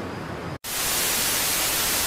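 Television static sound effect: a brief dropout, then loud, even white-noise hiss that starts abruptly just over half a second in, marking a glitch transition between clips.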